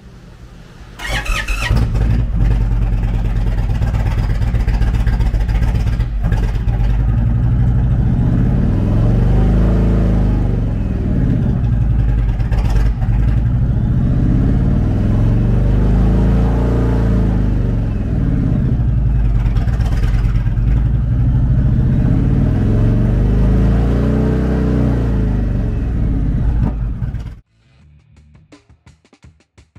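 2022 Indian Springfield's air-cooled 116 cubic inch V-twin, fitted with a TAB Performance exhaust and an open air intake, starts about a second in. It idles and is revved three times with the throttle, each rev rising and falling, then is switched off shortly before the end.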